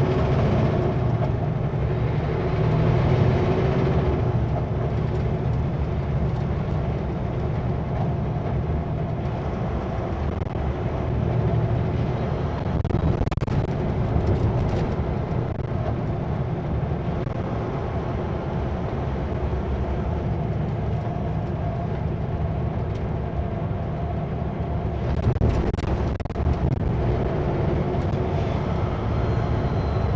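Kenworth W900L semi truck's diesel engine running under way, a steady low drone with road noise that swells and eases a little as the truck gets moving.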